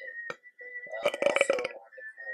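A person burps once, about a second in: a short, rough, rapidly pulsing belch lasting about half a second.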